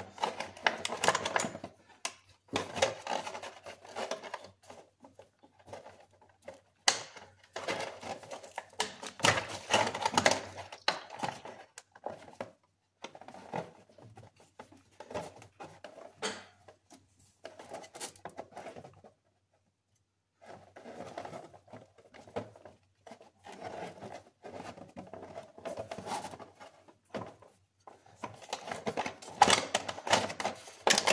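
Rustling, crinkling handling noise with small clicks, in irregular bursts with short pauses: the plastic sheet set up to catch coolant and clothing rubbing as a hand works around the thermostat housing.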